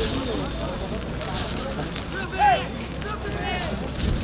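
People shouting and calling at a football match, scattered voices with one louder shout about two and a half seconds in, over a steady low background rumble.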